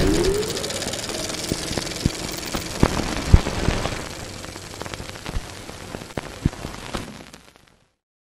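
Sound effects for a channel logo intro: a loud hit with a short rising tone, then a crackling, static-like hiss with scattered clicks and thumps. The hiss fades out near the end.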